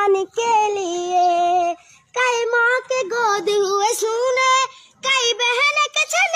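A young girl singing a Hindi patriotic song solo, in three long held phrases with short pauses for breath between them.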